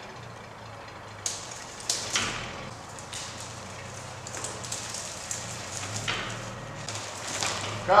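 A small two-wheeled trailer rolling slowly as it is towed, with irregular crackling and scraping over a leaf-strewn floor, over the low steady hum of the towing vehicle's engine.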